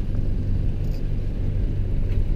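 A boat's engine running steadily, a low even rumble.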